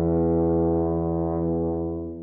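Tuba holding one long, low sustained note that begins to fade near the end.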